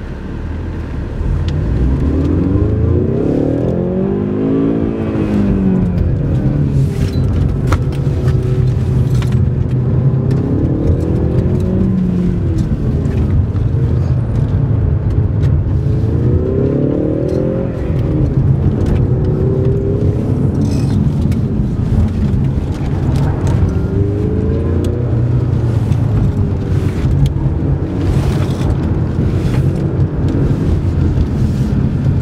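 Ford Mustang EcoBoost's turbocharged 2.3-litre four-cylinder engine heard from inside the cabin while being driven hard on a course. The engine note climbs under acceleration and falls away as the throttle is lifted, several times over, over a steady low rumble.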